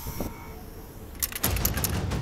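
Aerosol spray-paint can spraying in several short hissing strokes, starting a little past the middle, over a low rumble.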